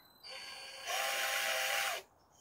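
Cordless drill spinning a chopstick in its chuck to wind a cloth hand wrap: it runs slowly at first, then about a second in speeds up to a louder, steady whine for about a second and stops just before the end.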